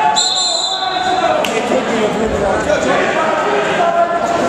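A referee's whistle blown once, a steady shrill tone lasting about a second just after the start, over spectators' voices; a dull thump on the mat follows a second later.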